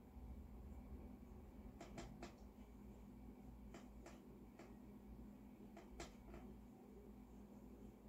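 Near silence: low room hum with faint small clicks in three little clusters about two seconds apart, from hands working inside an open upright piano's action.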